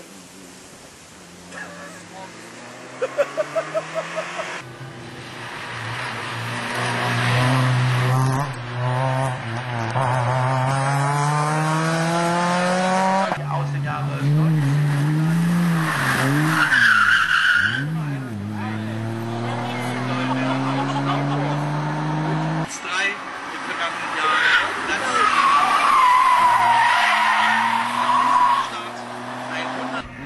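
Racing touring car at full throttle on a hillclimb, the engine note climbing steadily and dropping sharply twice as it shifts up, with a stretch of rising and falling revs in the middle. Tyres squeal near the end, and a few sharp cracks come just before it pulls away.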